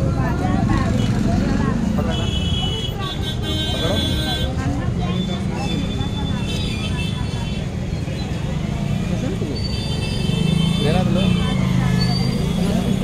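Street traffic running steadily, with vehicle horns tooting in a run about two to four seconds in and again near the end, over the chatter of people.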